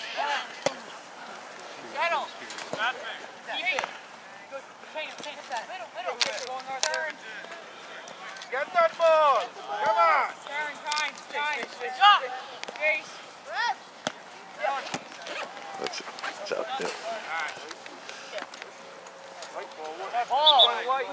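Shouts and calls from players and sideline spectators across an open soccer field, coming in scattered bursts. The loudest cluster is about halfway through, with a few sharp knocks among them.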